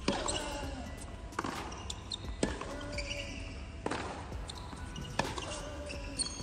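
Tennis balls struck by rackets in a hard-court practice rally: five sharp hits, about one every second and a half.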